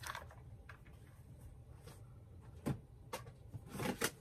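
A few light knocks and clicks of objects being handled and set down on a table, over a low steady hum. The sharpest come a little under three seconds in and near the end.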